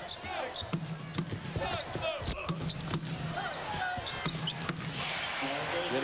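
Basketball dribbled on a hardwood court, a string of sharp bounces, over the steady noise and voices of an arena crowd.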